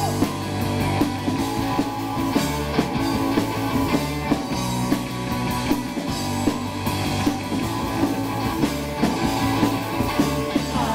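Live punk rock band playing: electric guitar, bass guitar and drum kit, with a steady beat of drum hits.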